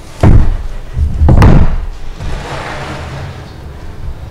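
Two heavy thumps about a second apart, the second ending in a sharp knock, followed by a fainter rustling hiss.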